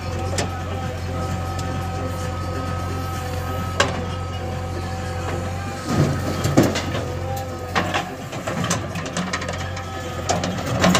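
JCB 3DX backhoe loader's diesel engine running steadily under load. About six seconds in, soil and clods are tipped from the loader bucket into a tractor trolley, with a cluster of loud knocks and thuds.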